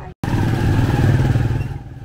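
Small motorcycle engine of a passing motorised tricycle, starting abruptly after a split-second of silence. It is loud for about a second and then fades away near the end.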